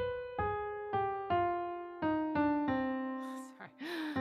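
Digital piano played one note at a time in a piano tone: a few repeated notes, then a slow line stepping downward, each note ringing and fading. It is a melody in harmonic minor being picked out on the keys. A short breathy sound comes near the end.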